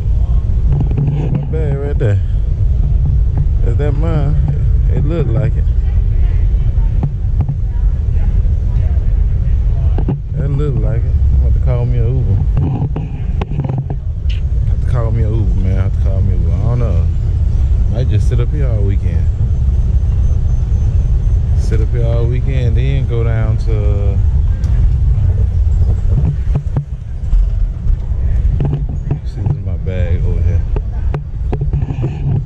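Low steady rumble while riding a long airport escalator, with voices talking indistinctly at intervals over it.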